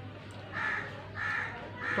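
A bird calling three times, short calls about two-thirds of a second apart, over a steady low hum.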